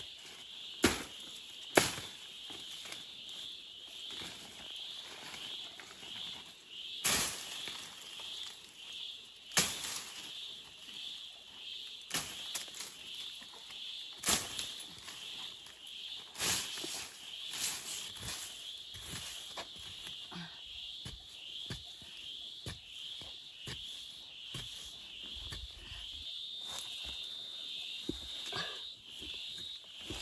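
A steady, high insect chorus runs throughout, with scattered sharp knocks, snaps and rustles as someone walks through dry leaves and brush and handles a tool and a rock.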